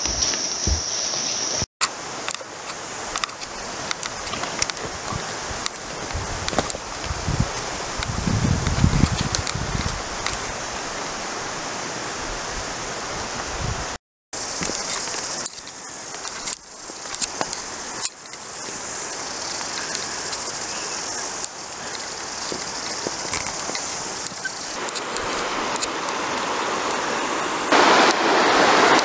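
Footsteps and the rustle of vegetation and gear as people walk through bush and grass, with many small scattered clicks and brushes. The rush of a river grows louder near the end.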